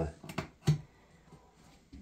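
A pause in speech: a few short clicks in the first second, one louder than the rest, then quiet room tone.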